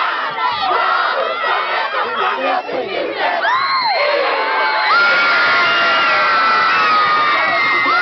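A large group of school pupils shouting the last calls of a haka, with whoops gliding up and down, then about five seconds in breaking into loud, continuous cheering.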